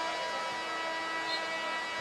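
Arena horn sounding one steady, sustained note for about two seconds over crowd noise.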